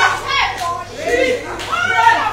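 A young girl speaking into a microphone in short phrases.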